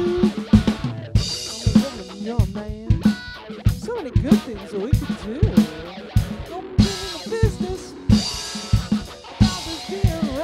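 Rock band playing: an electric guitar plays bending lead notes over a drum kit keeping a steady beat with bass drum, snare and cymbals.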